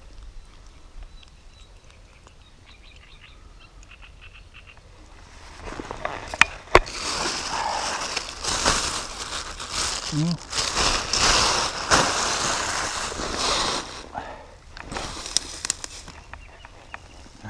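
Plastic carrier bag crinkling and rustling as it is handled and opened, loud from about six seconds in until about fourteen, with two sharp clicks at the start of it and a shorter spell of rustling near the end.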